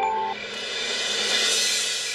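Dramatic background score: the last notes of a ringing chime-like percussion phrase die away just after the start, and a cymbal swell rises to about the middle, then fades.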